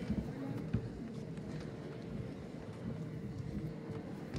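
Footsteps of several people walking across a stage, heard as scattered faint taps over a low murmur of voices in a large hall. A steady faint hum runs underneath.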